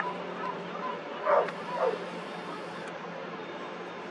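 Two short animal calls about half a second apart, the first louder, each falling in pitch, over a steady low hum.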